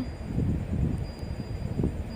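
Ground onion-and-spice masala paste and sliced onions frying in oil in a steel kadai: a soft sizzle under steady, low, crackly rumbling noise.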